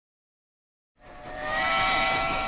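Steam locomotive whistle blowing, a steady chord of several notes over a hiss of steam, fading in about a second in and held.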